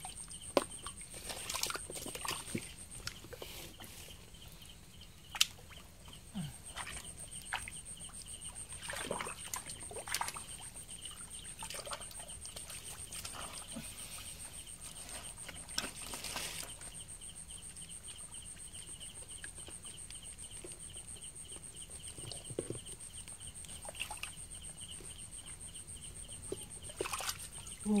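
Hands splashing and groping in a shallow muddy puddle while catching fish, with scattered sharp splashes and clicks of water. Underneath runs a steady high-pitched chirring of night insects.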